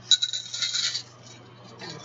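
Small metal objects jingling and clinking for about a second, with a fainter rattle near the end.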